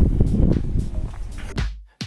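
Low rumble and irregular knocking from a handheld camera's microphone during a walk along a street, fading out abruptly near the end.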